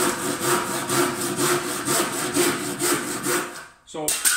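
Hand saw cutting a 45-degree angle into the end of a softwood skirting board with short, quick, even strokes, stopping near the end.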